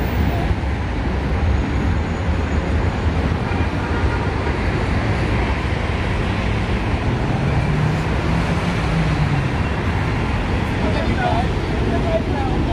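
Road traffic on a city street: a steady rumble of passing cars, with one vehicle's engine note standing out for a couple of seconds in the second half.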